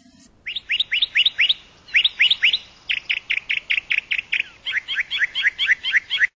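A small bird chirping in quick runs of short, rising chirps, about six a second, in four bursts with brief pauses between them.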